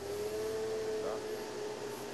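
A steady humming tone held at one pitch, with a faint background hiss.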